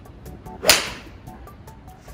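A golf club striking a ball off a driving-range mat: a single sharp impact about two-thirds of a second in.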